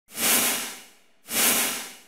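Two whoosh sound effects of a TV graphic transition, about a second apart: each a quick rush of hiss-like noise that fades away over most of a second.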